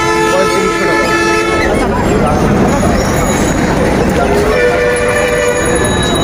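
Two long, steady vehicle horn blasts over continuous street and crowd noise: one held through the first couple of seconds, and a second, higher-pitched one starting near the end.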